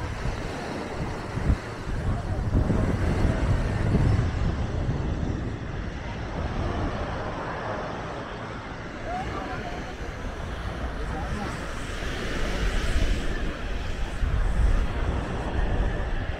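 Beach ambience: distant chatter of people over a low rumble that swells and fades.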